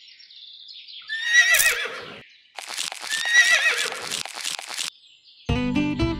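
A horse whinnying twice: a short, shaky call about a second in, then a longer, wavering one. Music starts near the end.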